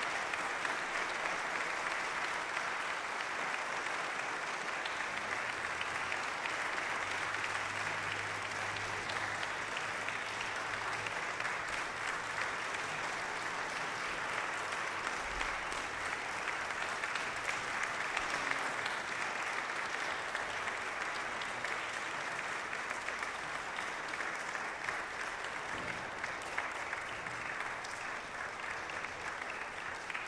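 Audience applauding steadily at the close of a concert, a long, even round of clapping that eases off slightly near the end.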